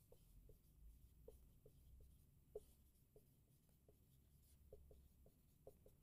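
Dry-erase marker writing on a whiteboard: a run of short, faint, irregular squeaks as the words are written.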